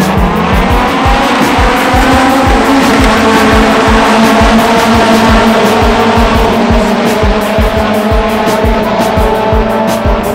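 Race car engines running at high revs on the track, a steady engine note that rises over the first few seconds and then holds. Background music with a steady beat plays underneath.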